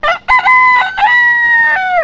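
A rooster crowing once, loud: a few short opening notes, then two long held notes, the last one dropping in pitch as it ends.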